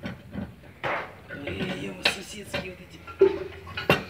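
Indistinct voices talking in the background, with a couple of sharp knocks, one about two seconds in and one near the end.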